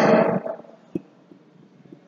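A man's spoken word trailing off, then a pause in a small room with one brief click about a second in.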